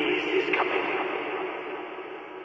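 A radio-static-like noise effect within an uplifting trance track, loud at first and then fading away steadily.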